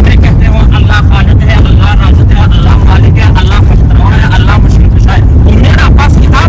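Loud, steady low rumble of a car driving, heard from inside its crowded cabin, under a man's talking.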